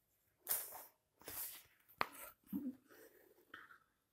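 A taped cardboard shipping box being handled: a few short scraping, rustling noises and a sharp click about two seconds in.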